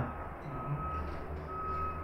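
Vehicle reversing alarm beeping twice, about a second apart, each beep a steady single tone lasting about half a second, over a low steady hum.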